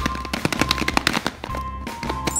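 Rapid rattling clicks of a large plastic egg being shaken with a toy loose inside, thinning out near the end, over steady background music.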